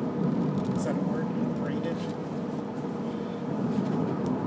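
Road noise inside a moving car on a highway: a steady rumble from the tyres and engine.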